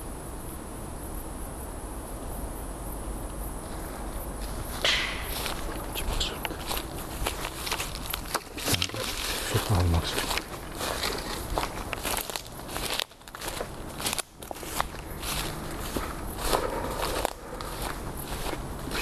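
Crickets chirring in the dark, then from about five seconds in, footsteps moving through undergrowth, with leaves rustling and twigs snapping in quick irregular crackles.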